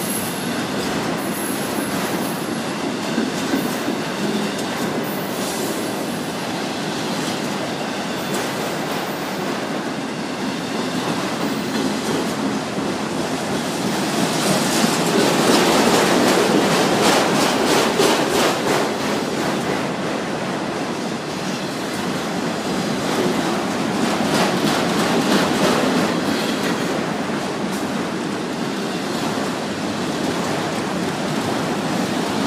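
Freight train of autorack cars rolling past close by: a steady rumble of steel wheels on rail with runs of rapid clicking as the wheels cross rail joints. It swells louder about halfway through and again near the end.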